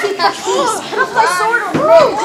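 A group of children shouting and cheering over one another.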